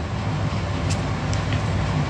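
Steady low rumbling background noise, with no speech over it.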